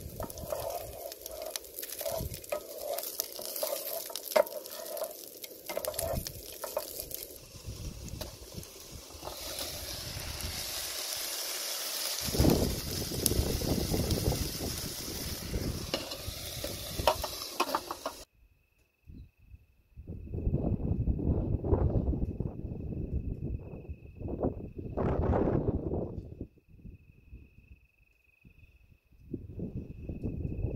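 Food frying in a non-stick pan, a wooden spoon stirring and scraping against it over a steady sizzle. About eighteen seconds in it cuts outdoors, where a steady high thin tone runs under a few swells of low rumble.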